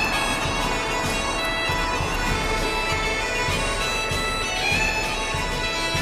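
Background music played on bagpipes: a melody over steady held drones, with a regular low beat underneath.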